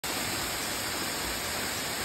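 Steady rushing of a tall, narrow waterfall pouring down a rock face, an even unbroken noise of falling water.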